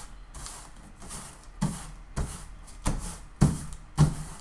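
Crumpled, coffee-stained paper rustling and crinkling as hands press and smooth it flat against a table, in a series of short swishes, the loudest near the end.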